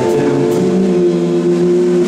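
Live blues band playing sustained, held notes with electric guitars, bass and drums, led by an amplified harmonica cupped against the microphone and playing long held chords.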